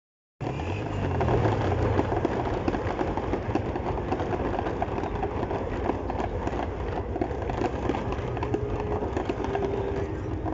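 Fireworks crackling: a dense, continuous run of small rapid pops, with a low rumble in the first couple of seconds.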